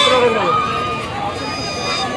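A voice over the noise of a crowd, with a steady held tone of several pitches sounding under it.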